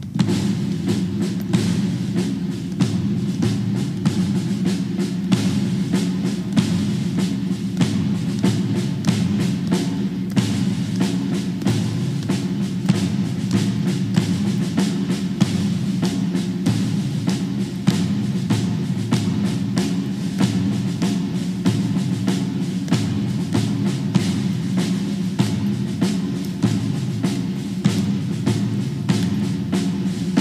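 Military band playing a march: sustained low brass tones over a steady, evenly spaced drum beat.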